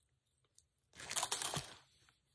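Metal rope chain rattling and clinking as hands work it: one short burst of rapid small clicks about a second in.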